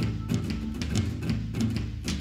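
Instrumental passage of a gothic folk doom metal song: drums playing a steady beat of about four or five strokes a second over low, sustained guitar and bass.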